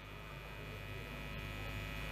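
Steady electrical hum from a rally's public-address sound system, with faint background noise under it, slowly growing a little louder.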